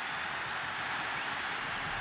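Football stadium crowd cheering, a steady even noise with no single voice standing out.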